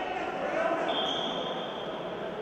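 Indistinct voices echoing in a large sports hall, with a single high, steady tone lasting about a second near the middle.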